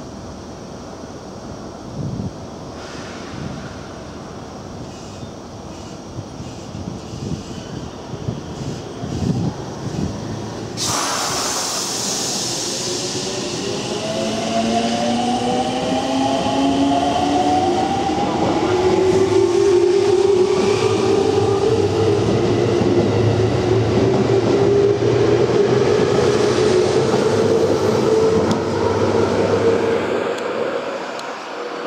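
A JR Central 313 series electric train, coupled to a 211 series set, pulling out of the platform. A sudden rush of noise comes about eleven seconds in. Then the inverter-driven traction motors whine in several tones that climb steadily as it gathers speed, over the running noise of the wheels on the rails.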